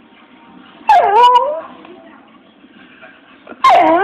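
Dog whining on command to 'speak': two loud, wavering whines, the first about a second in and lasting about half a second, the second starting near the end. Each dips and rises in pitch.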